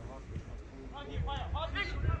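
Men's shouted calls on a football pitch, starting about a second in, over a low rumble.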